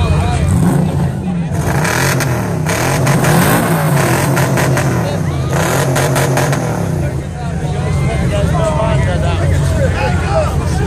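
Rock buggy's engine revving hard at high, wavering revs while its tyres spin in a tug of war, with two stretches of harsh noise about two and six seconds in. Spectators whoop and shout over it.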